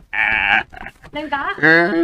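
A person's voice: a short breathy burst, then a long, quavering, bleat-like vocal sound held on one pitch through the second half.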